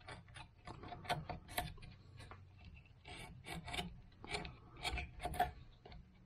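A small hand carving tool cutting and scraping into cottonwood bark in quick, irregular short strokes, roughly three a second.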